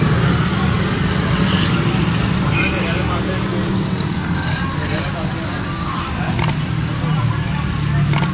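Indistinct voices over a steady low hum, with a thin high steady tone lasting about a second and a half partway through and a sharp click near the end.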